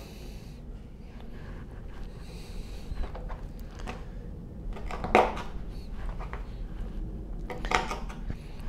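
A chef's knife slicing raw chicken thigh on a plastic cutting board, with two short sharp taps of the blade on the board, about five seconds in and near the end, over a low steady hum.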